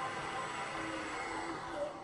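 Elevator hoist machinery running in the shaft: a steady whirring noise with a faint underlying hum.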